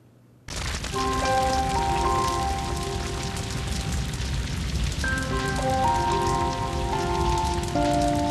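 The noise of a wildfire burning, a dense crackling hiss, under slow music of held chords. It starts about half a second in, after a brief silence.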